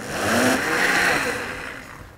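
Countertop blender motor whirring as it blends a fruit smoothie for the last time: the sound swells up, holds and then winds down toward the end.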